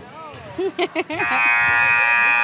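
Gymnasium scoreboard buzzer at a basketball game sounding one steady, loud tone, starting a little over a second in and still going at the end.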